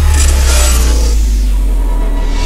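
Loud deep rumble with a hissing whoosh that swells twice over it, typical of a cinematic intro sound effect.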